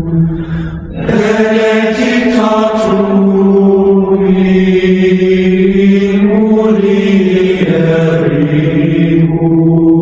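Gregorian chant sung in long held notes that step slowly from one pitch to the next. There is a short break about a second in.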